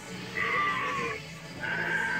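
A Halloween animatronic prop's recorded sound effect: a cry lasting under a second, then a steady high tone near the end, over a low steady hum.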